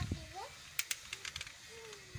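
A quick series of about five sharp plastic clicks, typical of Beyblade spinning tops being snapped onto their launchers, with faint children's voices.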